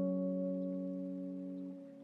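Sad guitar loop: a chord of plucked notes ringing on together and slowly fading, then cutting off shortly before the end.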